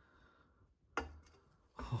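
A single sharp metallic click about a second in, from the 22 mm socket and breaker bar as the stubborn crankshaft bolt turns, otherwise quiet.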